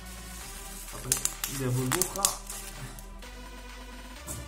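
Background music plays throughout. From about a second in to midway there is a burst of rustling, crinkling and clicking as plastic and cardboard packaging are handled, with a short voice-like sound in the middle of it.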